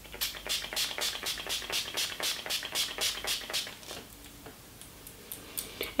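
Urban Decay Quick Fix hydrating face spray misted from its finger-pump bottle: a rapid run of short hisses, about four sprays a second, stopping about three and a half seconds in. A few faint clicks follow near the end.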